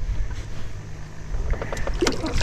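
Low rumble of wind on the microphone and handling noise in a small fishing boat, with a few light knocks near the end as the fish is moved to the measuring board.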